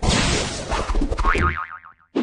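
Sound effects for an animated logo intro: a sudden, loud rushing crash with a low rumble beneath, then a wobbling tone that wavers up and down about a second in and fades out near the end.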